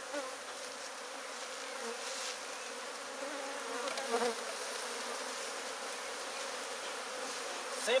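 Honeybees buzzing steadily in large numbers around an opened hive, the colony disturbed and many bees in the air.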